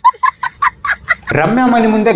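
A small child's high-pitched laughter, a quick run of short staccato laughs lasting about the first second, then breaking off as a man starts talking.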